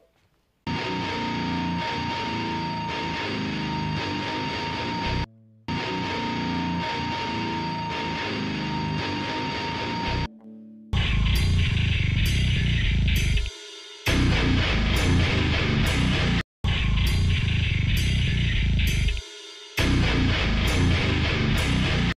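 Distorted electric guitars playing a rock riff through an amp: a held, ringing section that stops briefly twice, then from about 11 s a choppier riff with sharp, rhythmic attacks and short breaks.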